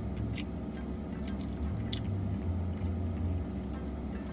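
A person chewing a soft pretzel, with a few short wet mouth smacks, over a low steady hum inside a car.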